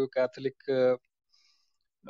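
A man talking over an online voice chat for about the first second, in short choppy phrases, then the sound cuts off to dead silence.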